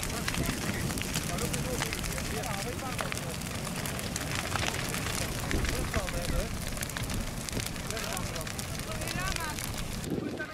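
Large brushwood bonfire burning, a steady rush of flame thick with rapid crackling and snapping of burning branches. Faint voices can be heard a few times in the background.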